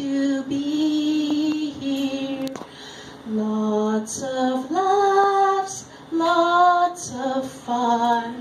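A woman singing solo in phrases of long held notes, with short breaks between the phrases.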